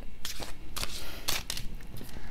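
A tarot deck being shuffled by hand: a string of short, irregular card clicks and rustles.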